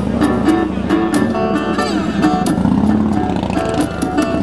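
Live acoustic blues: a fingerpicked acoustic guitar with a harmonica played over it, the harmonica sliding and bending its notes.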